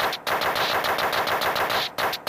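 Electronic hardtek/frenchcore breakdown from a Korg Electribe MX groovebox: a rapid stuttering roll of about ten hits a second with no kick drum, cut off briefly near the start and near the end.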